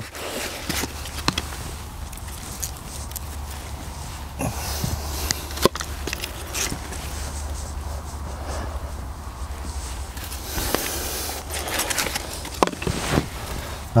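Hands scraping and patting loose soil while planting seedlings, with scattered light clicks and rustles of handling, over a low steady hum that fades out near the end.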